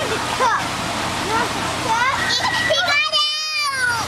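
A young child's high-pitched voice: short sounds, then a held note and a longer wavering call near the end, over a steady hiss.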